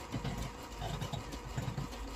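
Dry-erase marker drawing on a whiteboard: about three short scratchy, squeaky strokes as a rectangle and its dividing lines are drawn, over a faint steady hum.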